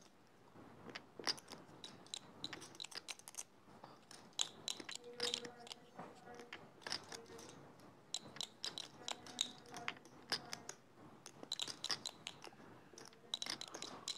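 Poker chips clicking faintly and irregularly as they are riffled and shuffled between fingers, a continual run of small sharp clicks.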